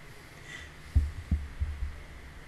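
Four soft, low thumps picked up close to a desk microphone, starting about a second in, the first two the loudest, with a faint steady high whine underneath.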